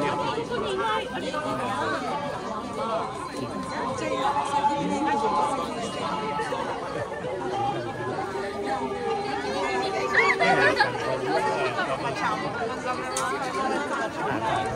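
A crowd of many people talking at once: steady, overlapping chatter with no single voice standing out.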